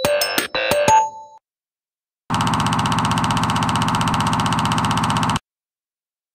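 Rhythmic electronic keyboard music from an advertisement, ending about a second in. After a short silence, a steady buzzing electronic tone holds for about three seconds and cuts off suddenly.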